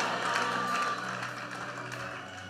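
Soft background music of sustained low chords, getting slightly quieter, under the fading echo of the last spoken words in a large hall.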